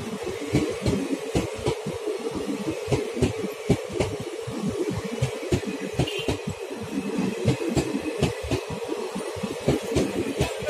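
Passenger coaches of an express train rolling past along the platform track: a steady rumble with many irregular low thumps and scattered clicks from the wheels on the rails.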